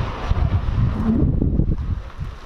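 Wind buffeting the microphone: a loud, irregular low rumble that comes in gusts.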